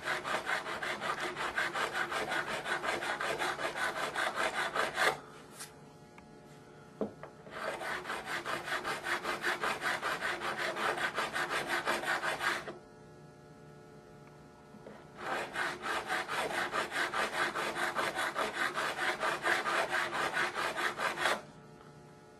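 A fret crowning file rasping back and forth over a guitar's fret wire, rounding the fret's crown. There are three spells of quick, even strokes with two short pauses between them.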